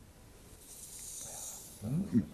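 A faint, soft hiss of breath lasting about a second, then a man starts speaking near the end.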